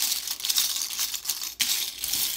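A hand stirring and rummaging through a bowlful of small oracle tokens, making a continuous clattering rattle of many small pieces knocking together and against the bowl. There is a short lull about one and a half seconds in.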